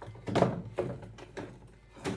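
A few dull thunks at irregular intervals, the loudest about half a second in, with fainter ones following.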